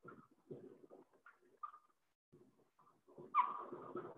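Dry-erase marker squeaking on a whiteboard while writing: a string of short, separate strokes, with a louder squeak near the end.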